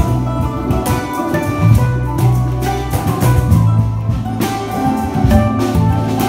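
Handpan playing a melody with ringing low notes, accompanied by an ensemble of plucked string instruments.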